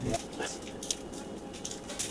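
Garlic bulb being pulled apart into cloves by hand, its papery skins giving a few short, dry crackles.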